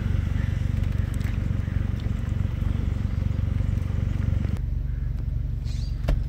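Vehicle engine and road rumble heard from inside the cabin while driving slowly, a steady low drone. About three-quarters of the way in the lighter hiss above it cuts off suddenly, leaving only the low hum.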